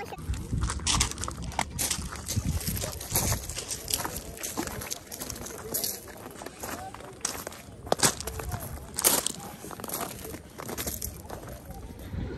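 Footsteps crunching irregularly on loose, rounded river pebbles, a series of sharp clicks and crunches, with faint voices now and then.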